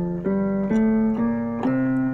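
Electronic keyboard playing the F major scale one note at a time, rising step by step at about two notes a second, each note held until the next.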